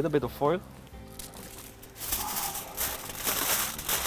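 Aluminium foil crinkling as a foil-wrapped package is handled in the hands, starting about two seconds in and continuing to the end.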